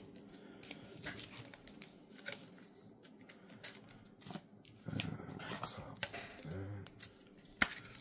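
Faint rustling and scattered light clicks of plastic card sleeves being pulled out and handled, with a brief low voice sound about five seconds in and again near seven seconds.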